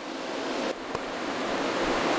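Cooling fans of a six-GPU RTX 3070 Ti mining rig running near full speed under load: a steady rushing noise that grows louder, with a brief dip just under a second in.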